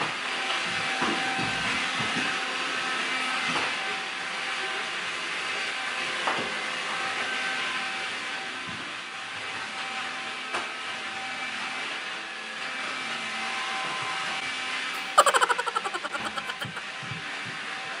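Vacuum cleaner running steadily, its motor giving a constant hum under a rushing noise. About three seconds before the end, a loud quick rattle of clicks dies away within a second and a half.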